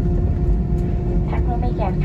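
Low, steady rumble and hum of a jet airliner's cabin while the aircraft taxis after landing, engines running at idle. About a second and a half in, a woman starts a Thai announcement over the cabin PA.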